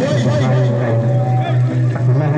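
Several men's voices shouting and calling over a steady low hum.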